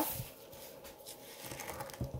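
Faint rustling and light scraping of porridge being levelled in a plate.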